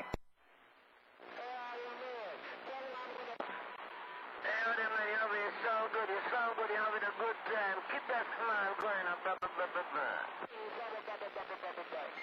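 Another station's voice received over a CB radio and heard through its speaker, thin and narrow-band. It comes in after about a second of faint hiss.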